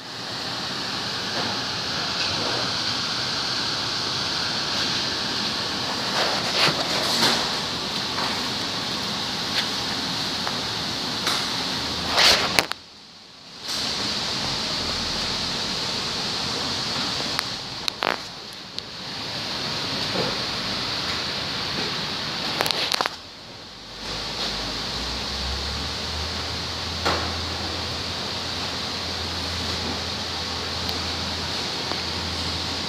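A steady hiss of background noise, broken by a few brief knocks and clicks and two short drop-outs. A low hum joins in for the last few seconds.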